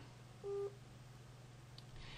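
A single short computer beep, one steady tone lasting about a quarter of a second, about half a second in, as the recording software is stopped and reports the recording finished. A faint steady low hum lies underneath.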